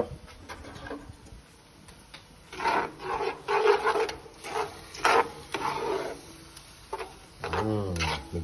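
Spatula scraping and stirring onions and tomato paste in a hot cast-iron Petromax FT9 Dutch oven: a run of rasping strokes beginning a couple of seconds in, loudest around the third and fifth seconds. A man's voice starts near the end.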